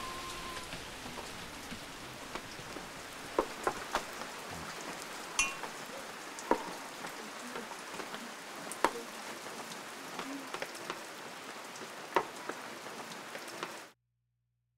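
Steady rain falling, with separate louder drips and drops landing every second or so; it cuts off suddenly near the end.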